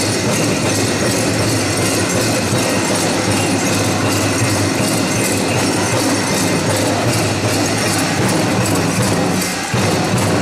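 Pow wow drum music for the dance, with the dense, steady jingling and rattling of many dancers' bells and regalia.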